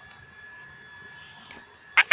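Quiet room tone: a faint hiss with a thin steady high-pitched whine, and one small click about a second and a half in.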